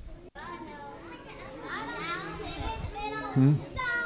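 Several children calling out answers at once, their voices overlapping. A man says a brief "hmm?" near the end.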